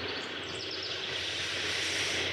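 Steady, even rushing background noise with no speech.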